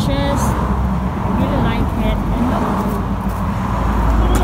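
Outdoor ambience: a steady low rumble with faint, distant talk and a few short, high warbling chirps.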